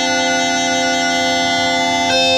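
Uilleann pipes playing one long held chanter note over their steady drones.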